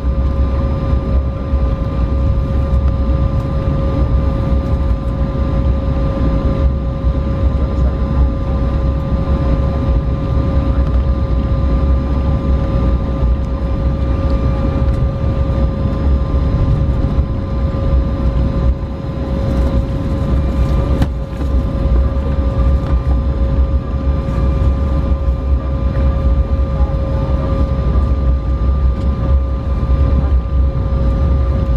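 Airliner cabin noise while taxiing: a steady low rumble from the jet engines at taxi power, with a constant hum held on two steady pitches.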